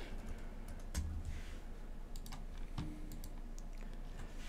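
Computer keyboard and mouse: a scattering of faint, light keystrokes and clicks.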